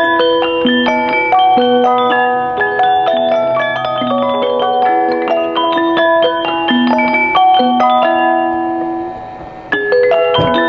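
The two-tune music box in the base of an antique French automaton, playing a tinkling melody of bright, ringing plucked notes. The music dips briefly near the end, then the notes start again abruptly.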